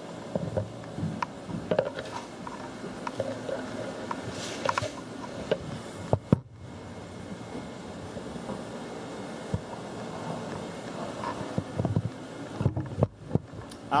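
Steady hum of room ventilation and equipment fans, with scattered light clicks and knocks from handling.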